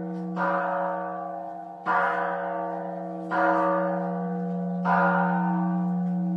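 A large bell struck four times, about once every second and a half, each stroke ringing on into the next over a steady low hum.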